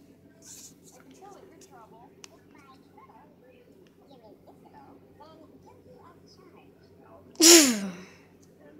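Faint television dialogue, then near the end one loud, sudden sneeze much louder than the TV sound, lasting about half a second, its voiced tail falling in pitch.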